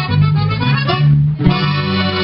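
Live band playing: piano accordion chords over a twelve-string guitar and electric bass, with a short dip just past the middle before the accordion comes in on a new held chord.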